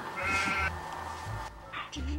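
A short bleat, about half a second long, near the start, edited in as a comic sound effect over soft background music.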